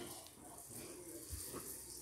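Quiet room tone with one soft, low bump about halfway through.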